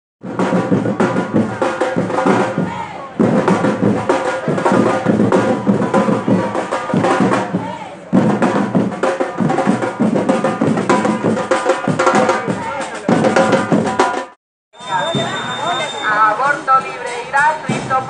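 A group of marchers beating large hand-held drums, with a crowd chanting and shouting over the beat. Near the end the sound drops out briefly at a cut, and voices follow.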